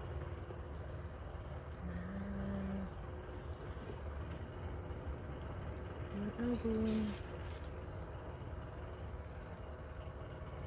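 A steady, high-pitched insect drone over a low rumble, with a short hummed voice sound twice, about two seconds in and again around six to seven seconds.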